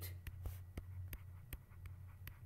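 Stylus tapping and scraping on a pen tablet while handwriting, about seven sharp ticks at an uneven pace over a steady low hum.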